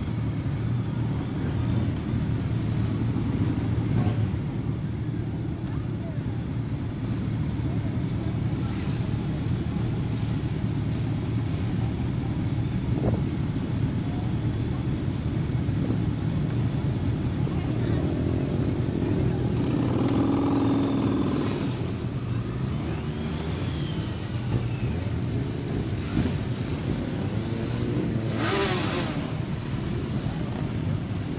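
Many motorcycle engines running together as a procession of bikes rides past. About two-thirds in, and again near the end, a single bike's engine note rises and falls as it goes by.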